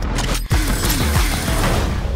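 Film-trailer sound design over music: a sudden heavy hit about half a second in, followed by a dense rushing swell with several falling tones, beginning to fade near the end.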